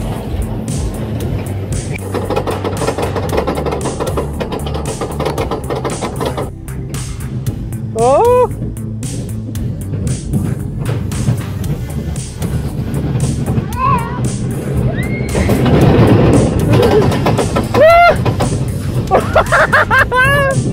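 Small steel roller coaster running along its track, rumbling and rattling, with fairground music playing. Riders let out rising whoops and squeals, more of them and louder in the last few seconds.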